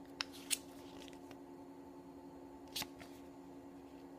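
Pages of a photo book being handled and turned: three short, crisp paper clicks, two close together within the first second and one nearly three seconds in, over a faint steady hum.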